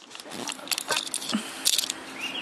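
Footsteps in flip-flops on gravel, with light clicks and rattles.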